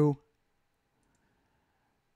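A man's voice trails off in the first moment, then near silence, with a faint click or two about a second in.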